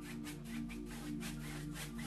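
Dry bristle brush worked back and forth on an oil-painted canvas in quick light strokes, about five a second, blending mist. Soft background music holds steady notes underneath.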